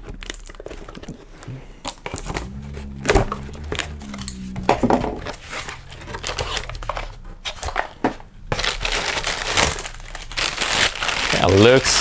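Packaging being opened by hand: a cardboard box slit and its flaps opened with scattered light clicks and scrapes, then a plastic bag crinkling loudly from about two-thirds of the way in as the item is pulled out of the box.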